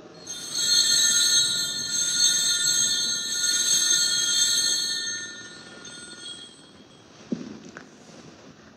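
Altar bells ringing at the elevation of the chalice, the signal of the consecration of the wine, their high ringing fading away about five seconds in. A soft knock follows near the end.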